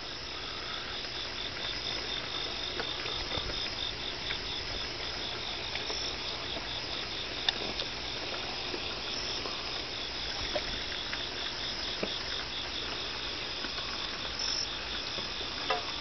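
A chorus of crickets chirping steadily in a rapid, even pulse, with a few faint clicks.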